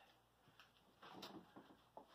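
Near silence, with faint handling noise about a second in as a corrugated plastic roofing sheet is moved.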